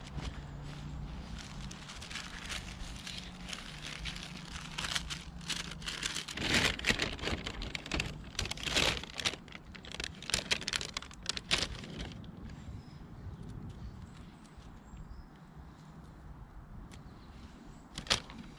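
Brown paper bag crinkling and rustling in the hands as mushrooms are dropped into it, a run of irregular crackles loudest in the middle and dying down over the last few seconds.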